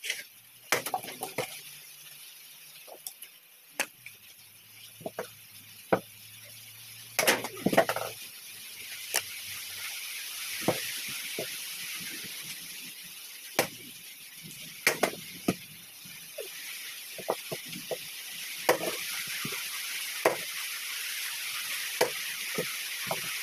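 Machete blows chopping and splitting firewood logs: sharp, irregular chops, sometimes several in quick succession, over a steady hiss that grows louder in the second half.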